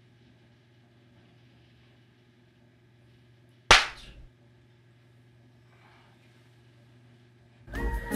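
A single sharp, loud slap across a face, a bit under halfway through, over a faint steady room hum; music starts just at the end.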